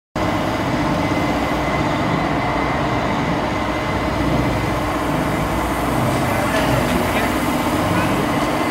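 Energy storm amusement ride running, a steady mechanical hum from its drive machinery with a thin, constant high whine as the gondola arms spin and swing.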